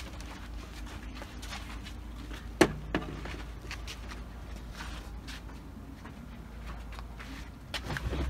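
A steady low rumble with faint scattered handling clicks and one sharp knock about two and a half seconds in, followed by a smaller one.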